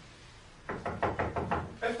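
Rapid knocking on a door, about eight quick knocks in a second, starting partway in.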